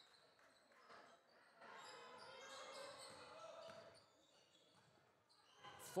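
Near silence in a large sports hall: faint, indistinct voices and court noise from a basketball game, swelling slightly for a couple of seconds in the middle.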